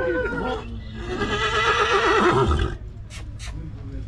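A draft stallion neighing: one loud call of almost two seconds, starting about a second in and cutting off abruptly.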